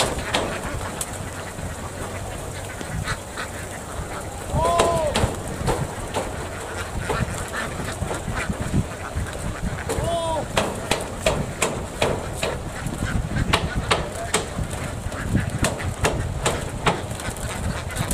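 A large flock of domestic laying ducks quacking and chattering continuously, with a few louder, drawn-out calls standing out at about 5 and 10 seconds in.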